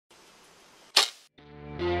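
A single sharp crack about a second in that dies away quickly, followed by guitar music fading in.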